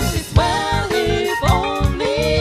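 Women singing a hymn into microphones, a lead voice with two backing singers, with sustained notes and vibrato over instrumental accompaniment with a steady low beat.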